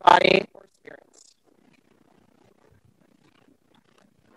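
A brief spoken word at the very start, then faint, scattered low room noise for the rest.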